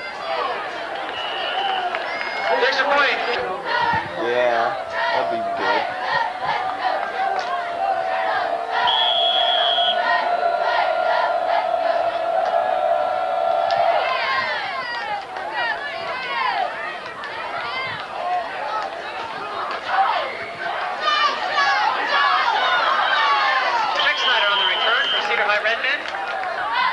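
Football spectators cheering and yelling, many voices at once, with one long held shout in the middle.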